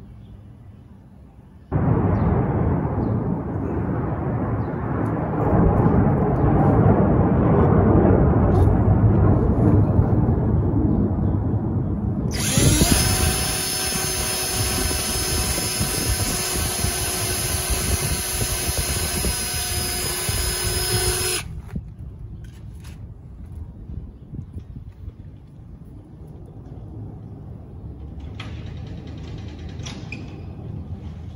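Cordless drill driving a screw into the flange of a brass garboard drain in a fiberglass boat hull. The motor spins up about halfway through, runs at a steady high whine for about nine seconds, then stops. Before it there is a loud rushing noise of unclear source lasting about ten seconds.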